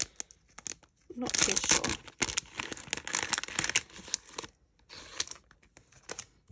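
Clear plastic packet of stickers crinkling and rustling as it is handled and opened. The rustling is loudest from about a second in to about four and a half seconds, with scattered small clicks.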